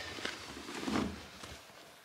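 Soft rustling and shuffling of quilted cloth saddle pads being pushed into the drum of a front-loading washing machine.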